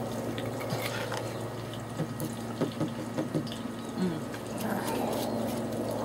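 Hot oil in an electric deep fryer bubbling with a steady sizzle, with a few light clicks from the batter bowl.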